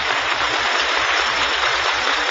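Large audience applauding steadily, a dense even clatter of many hands.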